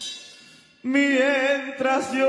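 Ranchera music: a cymbal-like hit at the start dies away, then just under a second in a singer's voice comes in suddenly on a long held note with wide vibrato, with little or no accompaniment.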